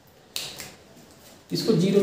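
A single sharp click about a third of a second in, fading quickly, then a man starts speaking.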